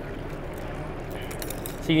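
Steady background noise of a large exhibition hall, an even hiss with no distinct events.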